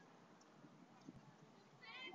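Near silence: faint outdoor background, with a single faint click just past the middle and a faint high chirping call starting near the end.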